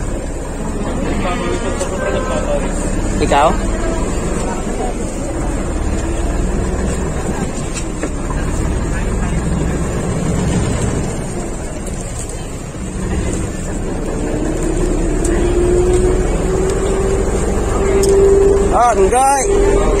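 Engine of a small passenger ferry boat running steadily under way, with water noise against the hull. In the last few seconds a whine rises steadily in pitch as the boat comes alongside the pier.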